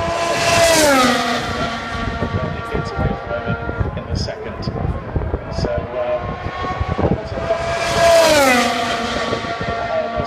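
Two Formula 1 cars with 1.6-litre turbo V6 engines at high revs pass close by, the first about a second in and the second about eight seconds in. Each engine's pitch drops sharply as the car goes past.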